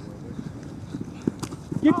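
Running footsteps on artificial turf, an irregular patter of soft thuds as players sprint during a play, with a shout near the end.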